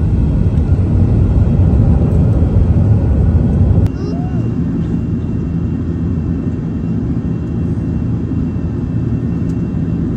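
Airbus A380 engines and airframe heard from inside the cabin on takeoff: a loud, heavy rumble that drops suddenly about four seconds in to a steadier, slightly quieter roar as the plane climbs.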